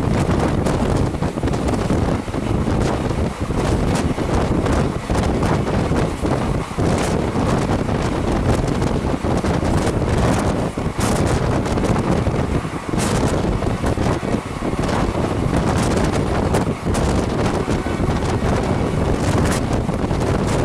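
Loud wind rush buffeting the microphone held out of the side of a fast-moving express train, with the train's running noise on the rails beneath it.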